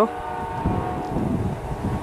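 Amtrak passenger train's horn holding a steady multi-note chord as the train moves away, over the low rumble of its wheels on the rails.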